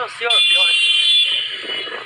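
A high-pitched steady tone, alarm-like, lasting about a second and then fading out.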